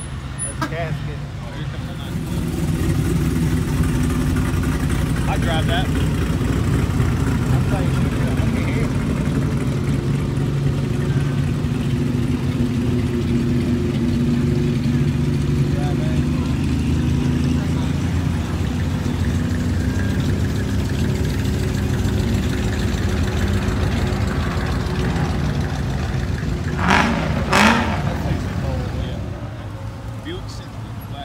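Vehicles in a slow roadside cruise, among them a large lifted truck, running past close by with a loud, steady low engine rumble for most of the stretch. Near the end there are two short, loud noisy bursts.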